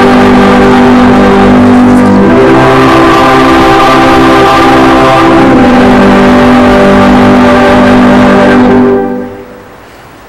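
A hymn sung by a church choir and congregation with accompaniment, closing on a long held chord that stops about nine seconds in.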